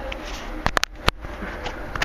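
Handling noise as something is set in place: a quick run of four sharp clicks and knocks a little after half a second in, over a steady background hum.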